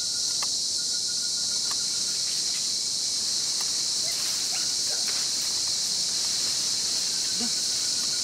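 Steady high-pitched drone of a rainforest insect chorus, with a few faint light clicks.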